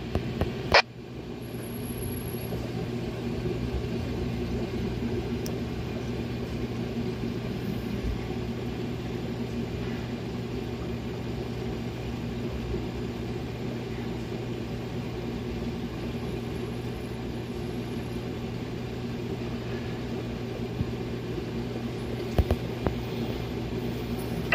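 A steady low mechanical hum, with a single click about a second in.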